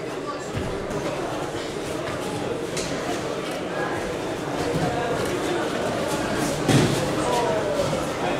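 Background chatter of spectators echoing through a large sports hall during a judo bout, with one brief, sharp, loud sound about two-thirds of the way through.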